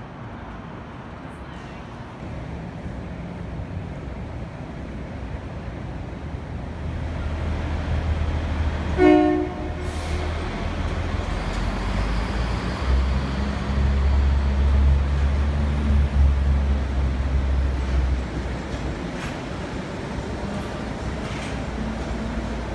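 Suspended monorail train running past: a low rumble builds through the first half, a short horn toot sounds about nine seconds in, then a deep, loud rumble for several seconds as the train goes by, easing off near the end.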